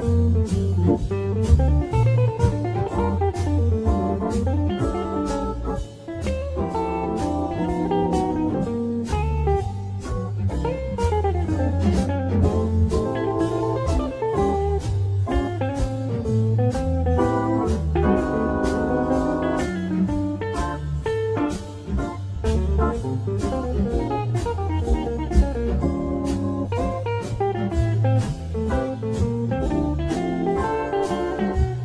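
Panico T Series T236 electric guitar playing a bluesy, jazzy lead of runs with notes that bend and slide, over a backing track with bass and a steady drum beat.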